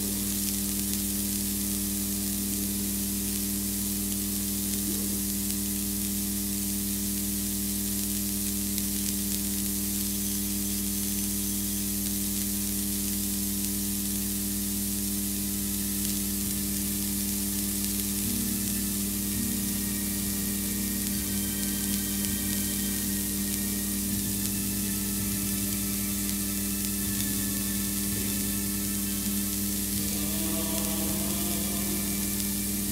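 Steady hiss with a constant low hum that stays unchanged throughout, with no speech or clear music.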